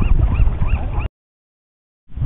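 A series of short, high animal calls, about four a second, over wind rumble on the microphone. The sound cuts off abruptly about a second in, leaving dead silence.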